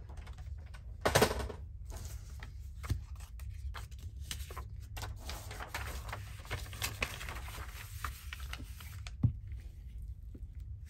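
Paper being handled on a cutting mat: rustling and light tapping, with a louder rustle about a second in and a single sharp knock near the end.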